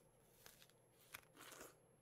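Near silence, with a faint click just past a second in and a brief soft rustle after it.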